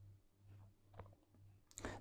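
Near silence: room tone with a faint low hum and one faint click about a second in.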